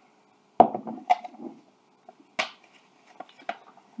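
A ceramic mug knocked down onto a wooden table with one sharp clunk about half a second in, followed by a few lighter clicks and paper-rustle ticks as a folded paper slip is handled.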